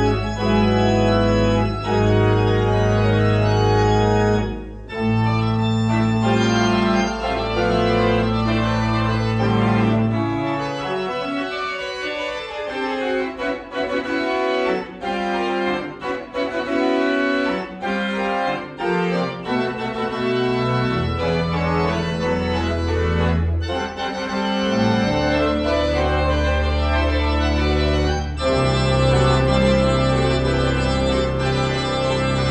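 Church organ playing full manuals and pedals, with long sustained bass pedal notes under chords. The deep pedal bass drops out for about ten seconds midway while quicker notes move above, then comes back in.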